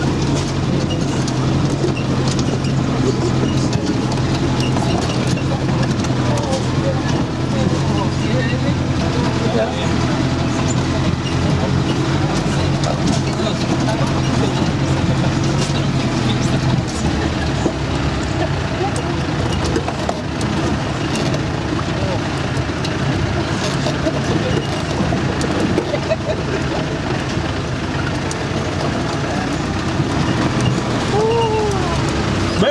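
The engine of a 4x4 off-road vehicle, heard from inside the cabin, running steadily as it drives slowly along a rough dirt track. Its steady low note changes a little past halfway through.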